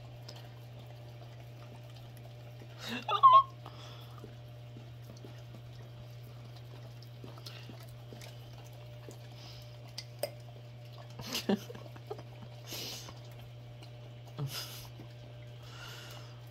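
Two German Shepherds licking sticky peanut butter out of a small plastic cup: scattered wet licks and smacks against a steady low hum. A brief, loud, pitched vocal sound comes about three seconds in.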